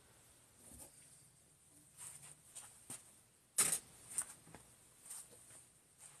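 Faint scattered clicks and rustles of painting tools being handled, with one sharper click a little past halfway.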